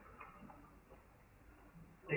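Near silence: faint room tone in a pause between spoken phrases.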